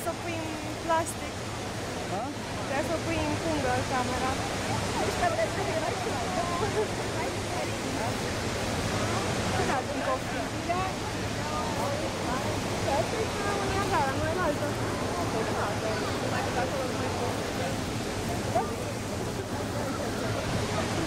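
The Horseshoe Falls at Niagara: a steady, loud rush of falling water and spray heard up close from the boat. Many scattered voices call out over it.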